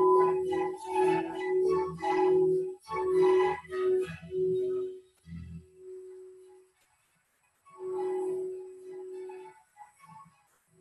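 Rainbow-coloured crystal singing bowl played with a wand: one steady ringing pitch that swells and dips over and over for about five seconds. A soft knock follows, the tone dies away, and it rings again about eight seconds in.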